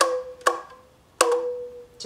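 A small pink ukulele played with three quick strokes across the strings, each note ringing briefly, the last one sustaining for most of a second.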